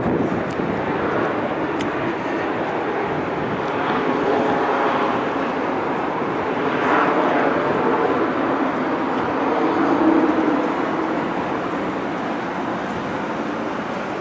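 Street traffic noise: a steady, fairly loud hum of road traffic that swells and fades a few times, loudest about ten seconds in.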